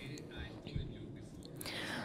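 Faint speech, a man talking low in the mix beneath a simultaneous-interpretation track, over a low steady room hum.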